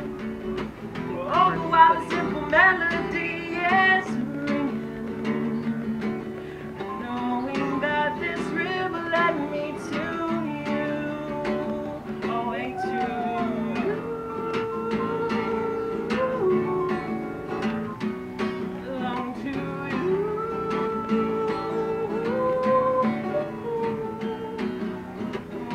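A man singing while strumming and picking an acoustic guitar, with held sung notes over steady chords.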